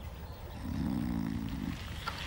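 An old man's low, drawn-out groan lasting about a second, from a TV comedy's soundtrack.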